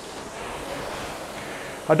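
Concept2 RowErg's air-resistance flywheel giving a steady whoosh as a rowing stroke is driven at about 20 strokes a minute.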